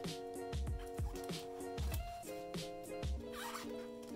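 Soft background music of held chords over a steady low beat, with the crinkle of plastic binder pocket pages being handled and turned.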